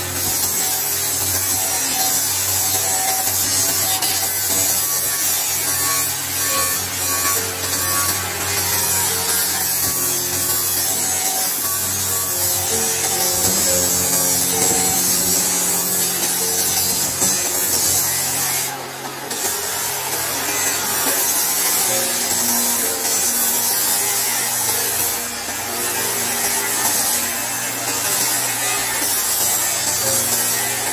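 Handheld power tool cutting along a grey slab: a steady high-pitched cutting hiss that dips briefly twice in the second half, under background music with held notes.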